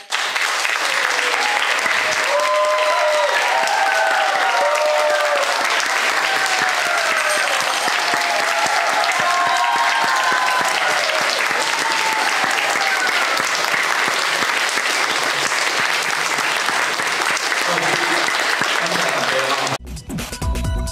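Audience applauding steadily, with voices calling out over the clapping in the first half. The applause cuts off abruptly just before the end.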